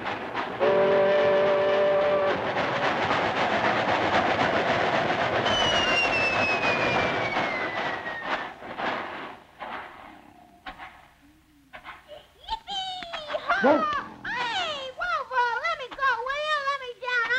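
A train whistle sounds a held chord, then a train rushes past noisily and fades away over several seconds, with a thin whistling tone sliding down in pitch as it goes. Wavering pitched sounds come in near the end.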